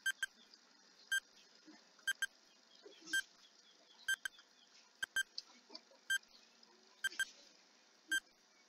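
Countdown timer sound effect: short, high, pitched ticks about once a second, some of them doubled, over a faint hiss.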